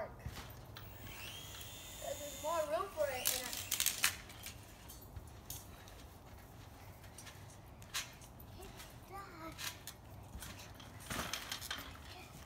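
Toy RC helicopter's small electric motor whining: it spins up about a second in, holds a high steady whine for about two seconds, then stops. Brief child voices and scattered knocks come in around it.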